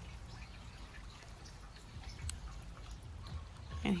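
Faint spray and trickle of diluted neem oil from a garden wand sprayer wetting a cactus, over a low rumble.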